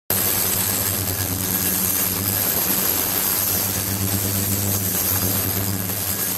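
Ultrasonic tank running with a 28 kHz transducer, sending ultrasound through a glass container standing in the water. It makes a steady electrical hum with a thin high whine over an even hiss from the agitated water.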